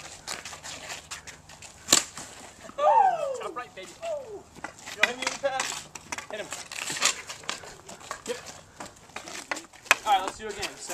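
Street-hockey stick knocking a ball on asphalt: a few sharp clacks, the loudest about two seconds in. A voice calls out briefly with a falling pitch about three seconds in.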